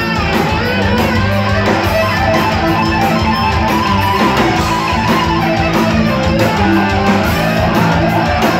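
Heavy metal band playing live: distorted electric guitars over bass and drums in an instrumental passage without vocals.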